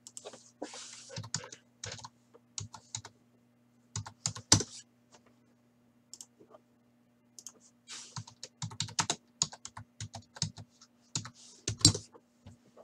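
Typing on a computer keyboard: irregular runs of key clicks, pausing for a couple of seconds about midway and then clicking faster toward the end, over a faint steady electrical hum.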